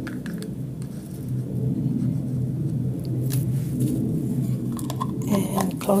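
A stick stirring thinned acrylic paint in a small plastic pot, with light scraping clicks against the sides. Then a plastic snap-on lid is pressed onto the pot, with a few sharper plastic clicks.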